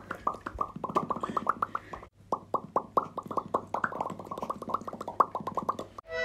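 A rapid run of short, hollow popping sounds, about six a second, with a brief break about two seconds in; it cuts off abruptly at the end.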